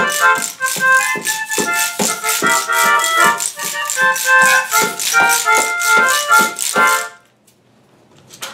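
A melodica plays a lively tune over a steady quick beat of shaken and struck tambourine and small wooden hand percussion. All of it stops abruptly about seven seconds in.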